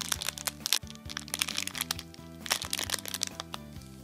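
Clear plastic bag crinkling and crackling as a packaged squishy toy is squeezed and turned in the hands, over background music. The crinkling comes in clusters of sharp clicks and thins out near the end.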